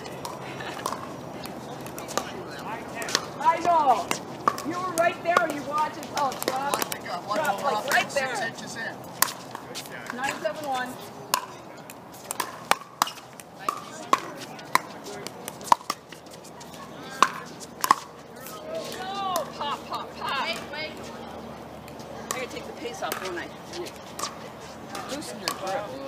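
Pickleball paddles striking a plastic pickleball: a rally of sharp pops coming roughly once a second, mostly in the middle of the stretch, with players' voices before and after.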